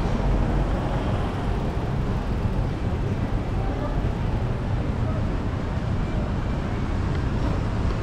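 Steady city street noise, road traffic with a low rumble, with no single event standing out.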